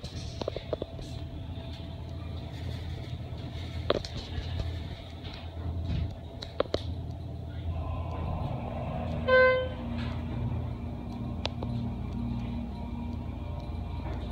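Schindler HT hydraulic elevator going up: scattered clicks in the first few seconds, then a steady hum from the hydraulic drive as the car rises, with one short beep partway through.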